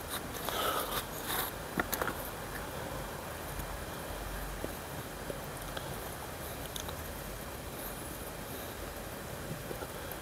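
Hands handling a plastic plant pot and digging in loose garden soil: a few short rustles and scrapes in the first two seconds, then soft occasional scratches over a steady faint background noise.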